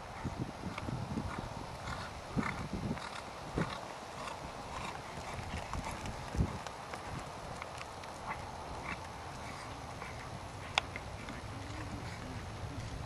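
Hoofbeats of a horse being ridden through a dressage test: a run of soft, irregular thuds, with one sharper click near the end.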